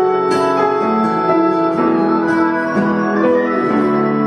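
Grand piano playing an instrumental passage of a slow folk song: sustained chords ringing and changing about once a second.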